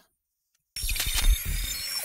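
Brief silence, then about three-quarters of a second in an electronic intro sting starts suddenly, with deep bass under high glitchy tones and clicks.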